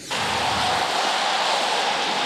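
A steady rushing noise with no pitch, starting abruptly and holding evenly for about two seconds.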